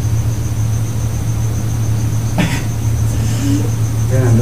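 A steady low hum, with a faint steady high whine above it and one short sound about two and a half seconds in.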